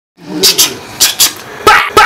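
Loud, short barks, mostly in quick pairs, starting a moment in.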